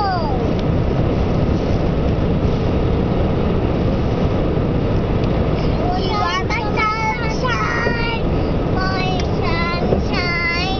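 Steady road and engine noise inside a moving car's cabin. A young girl's high voice sounds briefly at the start with a falling glide, then again for a few seconds in the second half in pitched, sliding phrases.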